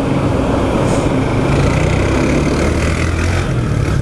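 Motorcycle engine running steadily as the bike rides slowly through traffic, with the engines of city buses close alongside.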